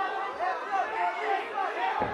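Fight crowd shouting and calling out over one another, many voices at once with no single voice standing out.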